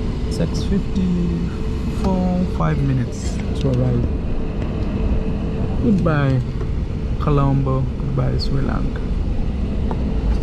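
Airliner cabin noise on the ground as the plane taxis: a steady low rumble with a faint steady hum under it. People's voices talk over it, mostly about two and six seconds in.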